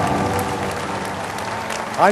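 Large indoor audience applauding, the clapping slowly dying down.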